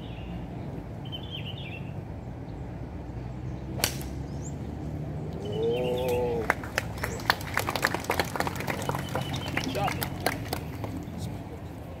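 Golf club striking the ball off the tee: one sharp crack about four seconds in. It is followed by a short call from a voice, then several seconds of scattered clapping.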